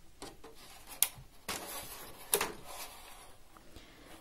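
Thin black plastic seedling cassettes being handled over a plastic tray: a sharp click about a second in, then a rustle and a plastic clatter near the middle.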